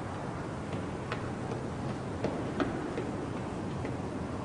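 Quiet background ambience with a steady low hiss and a few faint, irregular soft clicks.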